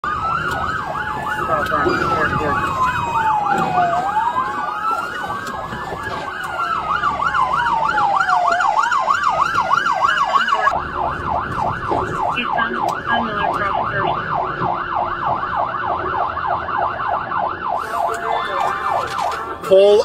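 Police car sirens. For about the first ten seconds a slow rising-and-falling wail overlaps a fast yelp, then the fast yelp goes on alone.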